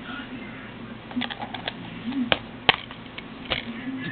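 Plastic DVD case being handled and opened: a run of sharp clicks and snaps, the loudest about two and a half seconds in, over a faint low hum.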